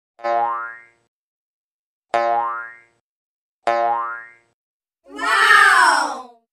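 Three cartoon 'boing' sound effects about two seconds apart, each a short springy twang with a rising pitch. Near the end comes a louder, longer sound effect whose pitch falls.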